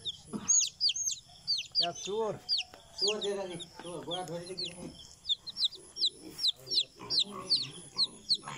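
Chickens calling: short high peeps that fall in pitch, several a second, with lower clucking calls from about two to four and a half seconds in.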